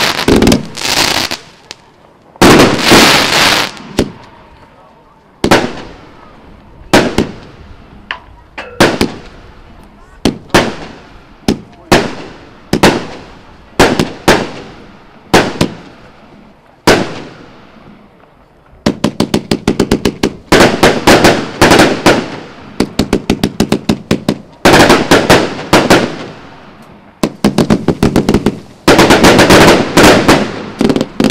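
Royal Fireworks 'Ano's Big Box' multi-shot firework cake firing. A few dense bursts of shots open it, then single shots come about a second apart, each bang trailing off. From about two-thirds of the way in come rapid volleys of many shots a second.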